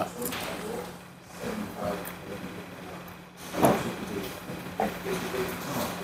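A man sipping blood orange sparkling water from a glass after a toast, with faint mouth and glass sounds and a short vocal sound about three and a half seconds in. A steady low hum runs underneath.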